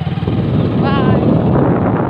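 Motorcycle engine running on the move, with its noise and rushing air growing louder shortly after the start. There is a brief voice sound about a second in.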